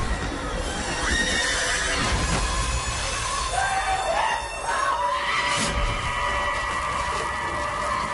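Horror film soundtrack: held high tones that bend up and down in pitch near the middle, over a steady low rumble and hiss.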